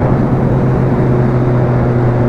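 Motorcycle cruising at a steady highway speed: an even engine hum holding one pitch, under rushing wind and road noise at the rider's microphone.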